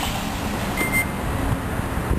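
Steady outdoor city noise, a low traffic rumble with wind on the microphone. A short high beep sounds once about a second in.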